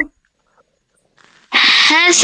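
After near silence, a man sneezes once, loudly, about a second and a half in: a sudden hissing burst that runs into a voiced sound.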